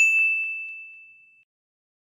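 A single high, bell-like ding sound effect struck once at the start, ringing on one steady pitch and fading out over about a second and a half.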